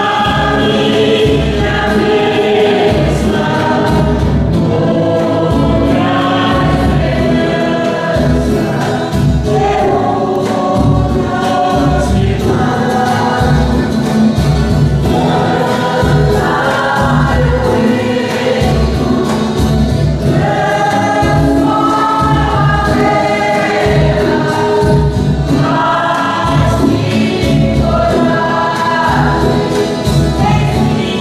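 A choir singing a hymn with instrumental accompaniment and a steady low beat, the music sung while communion is given at Mass.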